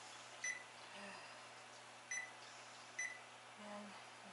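Electric range's touchpad controls beeping as the oven time and temperature are keyed in: three short, high beeps at uneven intervals.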